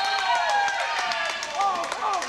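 Wheelchair rugby play in a gym: short calls and squeaks that bend up and down in pitch, over a string of sharp knocks from the ball and the chairs.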